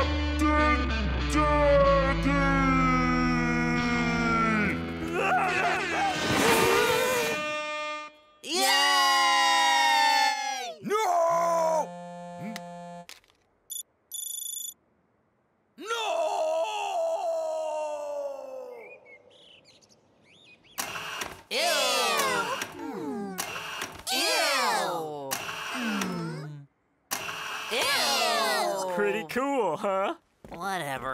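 Cartoon soundtrack of music under the characters' wordless cries, groans and shouts, with a few brief pauses.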